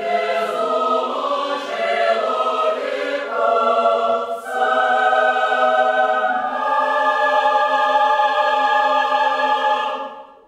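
Mixed chamber choir singing loudly in Russian, with a strong entry and a few hissing consonants in the first half, then a long held chord.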